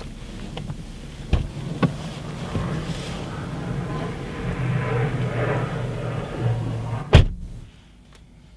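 Inside a car with the engine idling: a couple of sharp clicks, then clothing rustling as someone moves across the front seat, and one loud thump of a car door shutting near the end.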